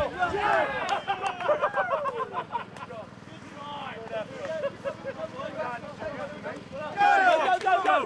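Several men shouting and yelling over one another in a rugby game, loud for the first couple of seconds, quieter in the middle, and loud again near the end.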